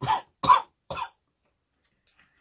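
A man coughing three times in quick succession, about half a second apart, the middle cough the loudest, after inhaling sherbet powder up his nose.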